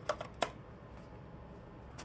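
Three or four short clicks in the first half second as a bare 2.5-inch Seagate laptop hard drive is pushed into a plastic USB-to-SATA drive sled, then a faint low hiss.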